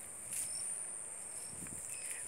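Crickets chirring in a steady high-pitched chorus, with a brief rustle about a third of a second in.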